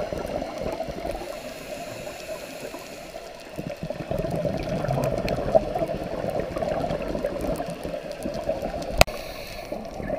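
Underwater sound of a scuba diver breathing through a regulator, with exhaled bubbles gurgling, heard through a camera housing; the bubbling grows louder about three and a half seconds in. A single sharp click comes near the end.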